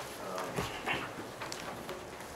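Meeting-room background during a pause: faint off-mic voices and a few scattered clicks and rustles of papers being handled.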